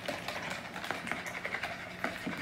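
Wire whisk beating eggs and oil in a plastic mixing bowl: a quick, irregular run of light clicks and taps.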